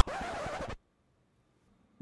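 Rap music cuts off abruptly, leaving a short scratchy hiss for under a second, then dead silence: the music video has been paused.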